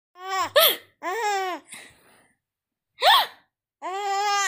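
A five-month-old baby laughing in short high-pitched bursts: a few laughs in the first two seconds, a sharp squeal about three seconds in, and another laugh starting near the end.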